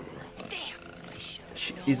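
A monster growling on a film soundtrack, at low level.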